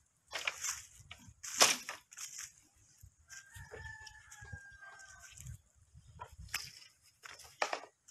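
Hollow knocks of bamboo poles being dropped and knocked against one another, twice near the start and three times near the end. In the middle a rooster crows once, a long call of about two seconds that falls slightly in pitch.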